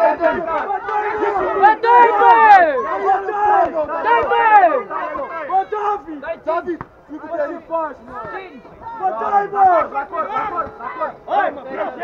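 Several men shouting over each other at a kickboxing bout, spectators and cornermen yelling at the fighters; the shouting is loudest a couple of seconds in and eases off midway before picking up again.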